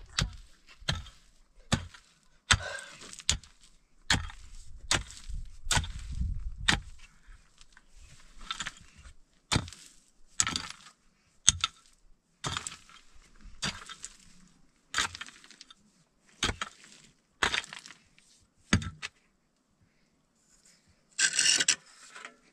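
A pickaxe chopping into packed rubble and gravel, a steady run of sharp strikes roughly one a second with loose stones rattling. The strikes stop a few seconds before the end, followed by a brief, louder rattling burst.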